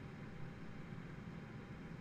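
Steady low background noise and faint hiss of room tone, with no distinct events.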